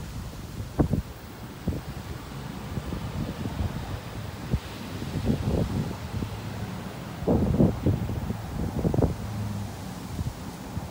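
Wind rumbling on a phone microphone outdoors, with irregular soft thumps and crunches from handling and steps.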